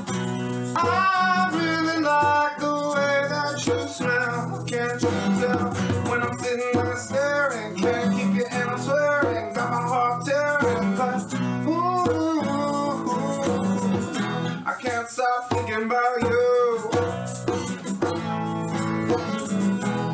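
Live acoustic song: a strummed acoustic guitar with a man singing the lead, over a steady egg-shaker rhythm.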